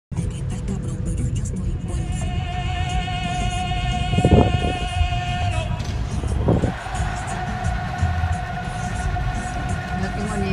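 Road and engine rumble inside the cabin of a moving car, with music playing over it. Two louder bumps stand out, a little after four seconds and at about six and a half seconds.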